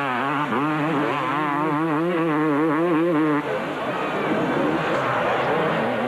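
A 250cc two-stroke motocross bike engine racing, its revs rising and falling rapidly for about three and a half seconds as the throttle works over the track, then a rougher, less even engine sound.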